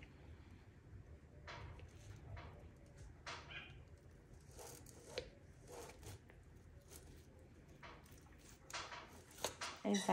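Capuchin monkey scrubbing the inside of a plastic baby bottle with a bottle brush: faint, scattered scrapes and light clicks.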